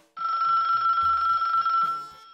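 A telephone ringing: one steady, high electronic ring lasting most of two seconds, cutting off suddenly near the end.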